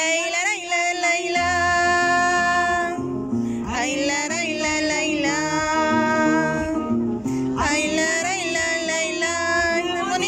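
A woman singing three long held notes, each wavering at its start, over a strummed acoustic guitar in a live amplified performance.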